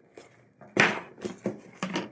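Clear plastic vacuum bag crinkling and rustling as it is handled, in several short bursts, the loudest about a second in.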